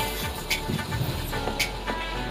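Background music with a steady beat, a percussive hit about once a second.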